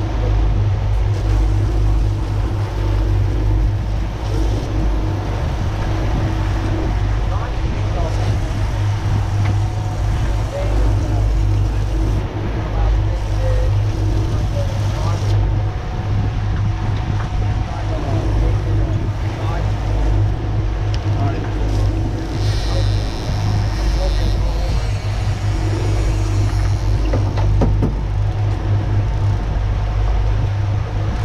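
Twin outboard motors running steadily under way, a constant low drone mixed with wind and water rushing past the hull.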